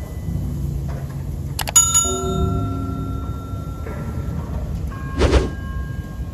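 Subscribe-button animation sound effects: a mouse click about a second and a half in, followed by a bell chime that rings on for a couple of seconds, over a low rumble of wind on the microphone.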